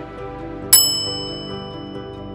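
A single bright bell-like ding about three-quarters of a second in, ringing on after the strike, over soft background music. It is a notification-bell sound effect for a subscribe button.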